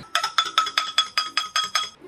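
A metal spoon clinking against the inside of a drinking glass while stirring a drink: about nine quick, evenly spaced clinks, roughly five a second, each with a short bright ring from the glass.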